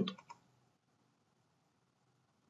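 Two light, quick clicks in close succession from operating the computer while adjusting the on-screen view, followed by faint room tone.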